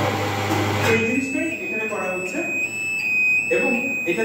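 A man talking over a low machine hum. The hum stops about a second in, and a steady high-pitched electronic tone comes on and holds.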